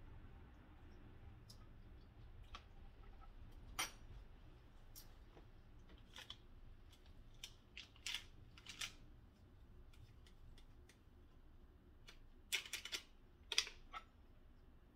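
Scattered light clicks and taps of a metal spoon and small kitchen items being handled, then a quick run of clinks near the end as the spoon is worked in a tall cup.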